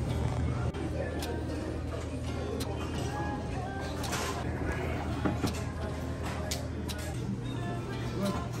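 Background music with the murmur of voices and scattered short clicks.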